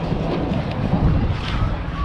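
Wind buffeting a body-worn camera's microphone, a steady low rumble.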